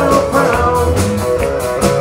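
Live country band playing a passage without vocals: strummed acoustic guitars over drums keeping a steady beat.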